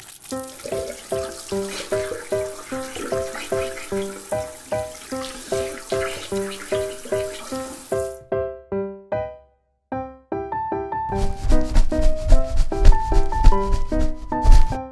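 Light background music of plucked notes over a shower spray running into a salon shampoo basin, which cuts off suddenly about eight seconds in. About three seconds before the end, a loud rhythmic scrubbing of hair being shampooed starts.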